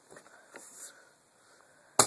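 A small homemade bomb of black powder wrapped in paper goes off in one sharp bang near the end, after a few quiet seconds. It is a little burst rather than a big blast.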